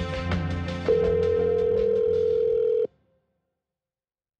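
Podcast theme music, joined about a second in by a steady telephone ringback tone that holds for about two seconds. Both cut off abruptly just before three seconds in, as the call is placed.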